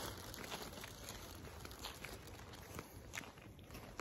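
Faint footsteps of people walking on a paved street, soft irregular steps about two a second over a low rumble.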